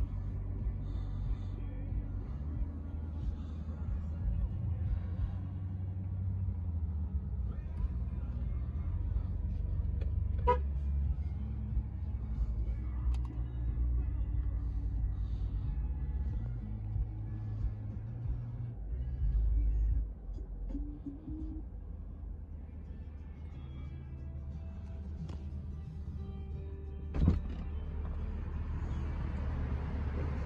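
Bass-heavy music playing through the car's premium Bose speakers, heard inside the cabin. One sharp knock comes near the end.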